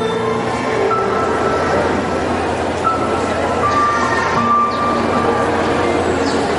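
Slow background music of long sustained notes that change pitch every second or so, over a steady wash of crowd noise.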